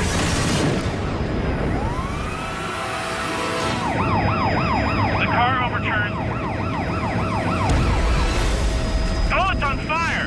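Police sirens yelping in quick rising-and-falling sweeps from about four seconds in, after one slower wail, over a steady low rumble.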